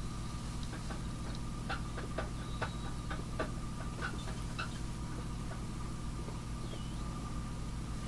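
Faint steady electrical hum with a few soft, scattered ticks of handling noise from a hand holding a small culture cup.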